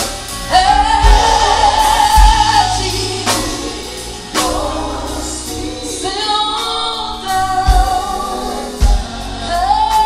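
Female gospel vocal trio singing in harmony with a live band of drums, bass and electric guitar. Two long held high notes, the first about a second in and the second from about six seconds, with drum hits beneath.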